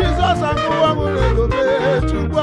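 A man singing a drawn-out, wavering gospel line through a microphone over a live band with bass and drums.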